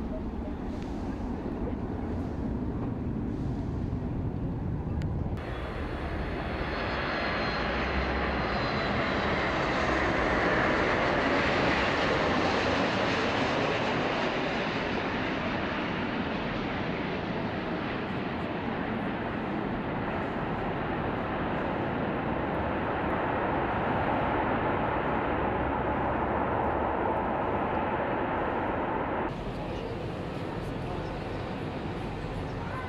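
Airliner engines: a steady rushing jet noise that jumps up after about five seconds, with a faint high whine, swells to its loudest about ten seconds in and holds, then cuts off suddenly near the end.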